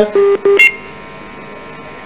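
Short electronic beeps on a telephone line: two brief low beeps, then a quick higher double tone. After that a faint steady line hum.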